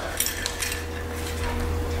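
Light metallic clinks of a steel grab-handle bracket, made of 1/8-inch plate, and its loose hardware being handled, over a steady low hum.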